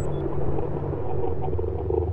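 Low, steady electronic drone from an animated logo intro's sound design, holding sustained low tones that swell slightly about a second in.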